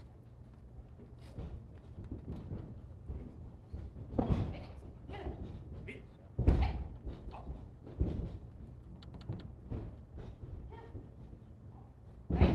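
Aikido practitioners' bodies hitting the mat as they are thrown and take breakfalls: three heavy thuds about two seconds apart starting about four seconds in, with lighter knocks and shuffles between.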